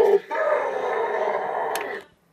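A person's voice holding one long, drawn-out vowel for nearly two seconds: the stretched "baaaack" of "don't come back", dipping slightly in pitch and then holding steady.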